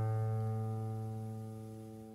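Guitar's open fifth string, low A, ringing after a single pluck, played as a tuning reference note. It is one steady pitch that slowly fades away.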